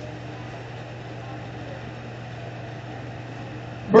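Room tone of a hall: a steady low hum over faint even background noise, with no distinct events.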